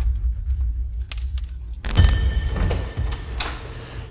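Title-card sound effect: a deep bass rumble that ends in one sharp hit about two seconds in, followed by a quieter stretch.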